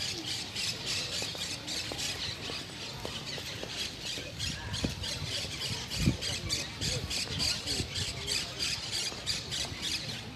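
A flock of birds squawking continuously, with many rapid shrill calls, and one low thump about six seconds in.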